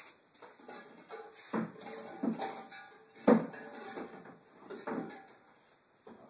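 A series of metallic clinks and knocks, each ringing briefly, as metal tools and parts are handled; the sharpest comes about halfway through.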